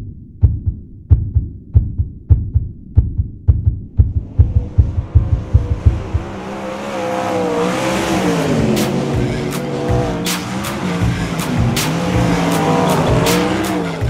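A heartbeat-like thudding that quickens over the first few seconds, then gives way to a race-car V8 at speed, the two-seater sprintcar's 410 cubic inch methanol engine, its pitch rising and falling with the throttle and with frequent sharp clicks over it.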